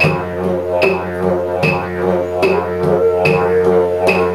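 Didgeridoo playing a continuous low drone with a stack of overtones, punctuated by a sharp rhythmic accent about every 0.8 seconds.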